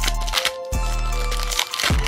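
A Pokémon booster pack's foil wrapper crinkling and tearing as it is pulled open by hand, with crinkles at the start and again near the end, over steady background music.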